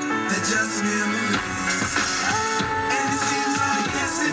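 Music from an FM radio station playing through a 2003 Toyota Camry's stock six-speaker, 180-watt factory stereo, heard inside the car's cabin. A low bass beat comes in about a second and a half in.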